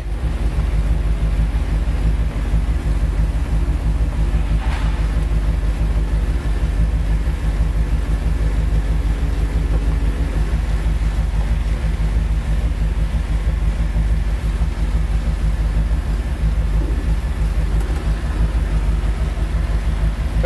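Ford 390 V8 idling with a steady low rumble through glasspack mufflers while the 1964 Thunderbird's power convertible top mechanism runs, raising the rear deck lid and folding the top. The mechanism's hum changes note about halfway through, and there is a single click about five seconds in.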